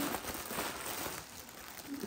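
Faint crinkling and rustling of plastic packaging as items are handled out of a delivery parcel, a few soft scattered rustles.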